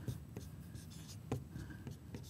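Dry-erase marker writing on a whiteboard: a few faint, short scratching strokes, one a little stronger about a second and a half in.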